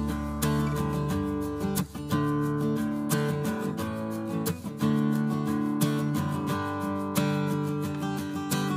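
Background music: an acoustic guitar strumming chords in a steady rhythm.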